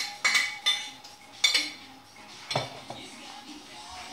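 Metal fork clinking against a bowl three times in the first second and a half as the last of the beaten egg is scraped into the frying pan, then a duller knock about two and a half seconds in.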